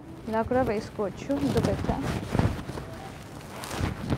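Silk dupatta rustling and swishing as it is handled and draped over the shoulders, with a short bit of a woman's voice near the start.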